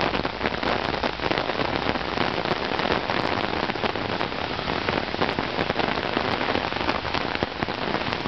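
Heavy rain pouring steadily onto a street and pavement: a dense, even hiss full of sharp drop ticks.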